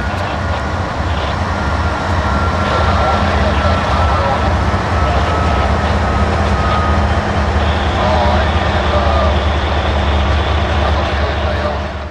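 Loaded coal train's hopper cars rolling along the track, steel wheels on rail making a steady, heavy rumble. A faint high whine is heard in the first half and fades by about the middle.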